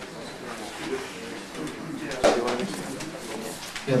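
Low murmur of voices in the room while an archtop guitar is lifted and handled, with a sharp knock a little past halfway through.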